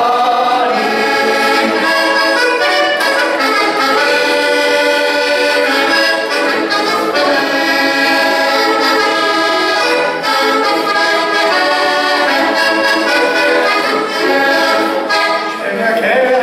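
Button accordion playing an instrumental passage of a folk song tune, with steady chords and a melody moving note by note, without singing.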